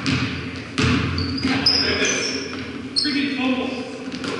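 Basketball bouncing on a hardwood gym floor, a few sharp bounces, with short high sneaker squeaks from players on the court, all echoing in a large gym.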